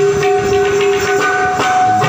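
Harmonium holding steady reed notes, changing notes about one and a half seconds in, over hand-drum strokes from a dholak.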